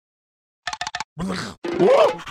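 Cartoon sound effects: a quick run of short patters as the yellow larva character moves in, then two vocal noises from it, the second louder and rising in pitch.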